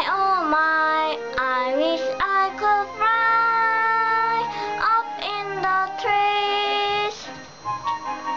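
A child singing a children's English song over backing music, with gliding and long held notes and a short pause near the end.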